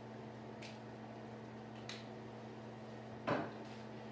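A bent steel bar set down on a table: one short knock about three seconds in, after a faint click, over a steady low hum.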